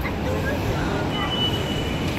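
Steady low rumble of a subway train running beneath the street grates, with a high, steady metal wheel squeal setting in about halfway through.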